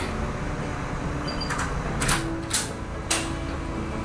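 A few short clicks and knocks, about four in the second half, over steady room noise.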